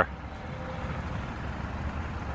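Steady low background rumble of outdoor street ambience, with no distinct events.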